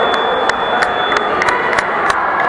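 Spectators cheering and calling out over a steady crowd din, with sharp claps about three times a second. A thin steady high tone sounds through the first half and stops.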